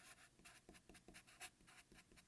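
Faint strokes of a felt-tip marker writing block letters, a quick run of short scratchy strokes, one after another.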